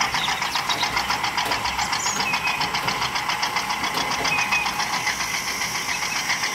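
Small remote-control toy tractor driving over sand, giving a steady rapid chugging pulse of about eight beats a second.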